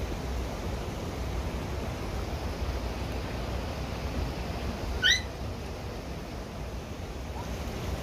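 Steady outdoor rushing noise with one short high-pitched squeak about five seconds in.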